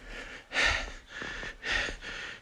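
A person breathing audibly: two short breaths about a second apart.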